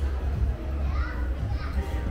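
Shop ambience: shoppers' voices in the background, with a child's high voice about a second in, over a steady low rumble.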